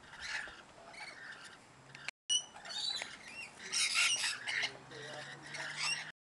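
A flock of rainbow lorikeets chattering and squawking as they feed, a busy jumble of short, shrill calls, thickest about four seconds in. The sound cuts out for a moment about two seconds in.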